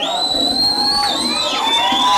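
A group of children cheering and shouting, with several long, high-pitched held calls overlapping.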